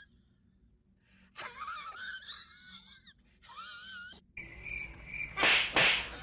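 Cat meowing: two drawn-out, wavering, raspy meows, followed near the end by a loud, short hissing burst of noise.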